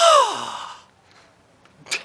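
A man's loud, breathy sigh-like exclamation, its pitch sliding steeply down over about half a second, followed by a brief sharp sound near the end.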